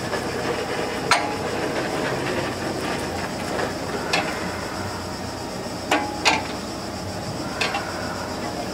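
A National Gas Engine, a large single-cylinder horizontal stationary engine run on producer gas, turning over slowly. Sharp metallic clacks come from the engine every second or two over a steady mechanical running noise, with two clacks close together about six seconds in.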